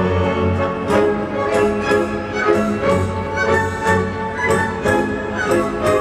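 Symphony orchestra playing a dance piece, with a steady pulse of about two accents a second under sustained melody lines.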